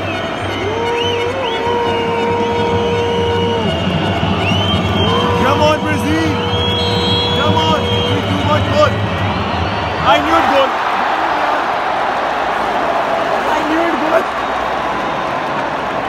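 Football stadium crowd during a penalty kick: a steady din with long, held horn-like tones over it for the first eight seconds. Then a surge of crowd noise about ten seconds in, as the penalty is struck.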